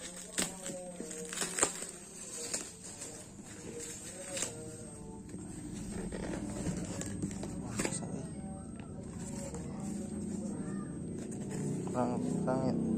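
Scissors snipping through packing tape and a cardboard parcel, a few sharp snips in the first half, then cardboard flaps being handled and pulled open. Faint background voices are heard underneath.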